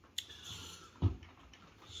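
Handling noise from a plastic auto-tracking phone holder turned in the hands: a sharp click near the start, a short rustle, then a soft knock about a second in.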